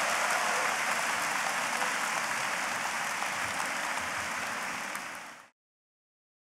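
Large audience applauding steadily, fading out about five seconds in.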